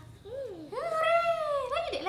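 A young child's high-pitched vocalizing: a short wavering call, then a longer drawn-out call of about a second that rises and falls in pitch.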